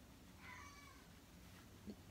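Near silence, with one faint, brief high-pitched call about half a second in.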